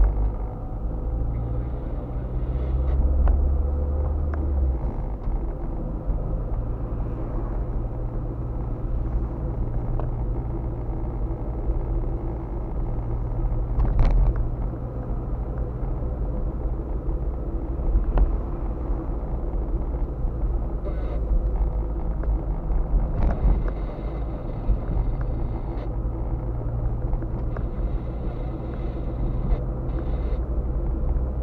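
Car driving, heard from inside the cabin: a steady low rumble of engine and tyre road noise, with a few short knocks.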